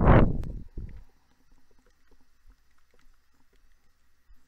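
A sheet of paper being slid across a desk: a brief, loud swish in the first second, then only faint small ticks.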